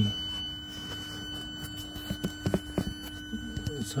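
A steady faint hum with a few soft handling clicks and brief, quiet murmurs from a man's voice.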